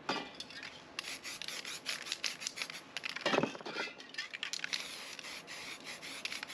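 Aerosol spray-paint can sprayed in many short, quick bursts of hiss, with a louder burst about three seconds in.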